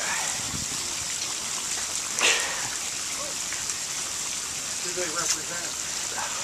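Steady rushing hiss like splashing water, with a brief sharp knock about two seconds in and faint voices near the end.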